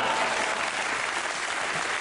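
Live audience applauding, easing off slightly toward the end.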